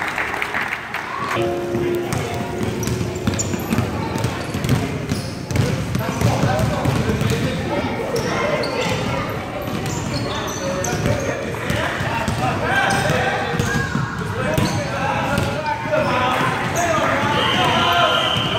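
Basketball bouncing and being dribbled on a hardwood gym floor, with people's voices calling out across the court.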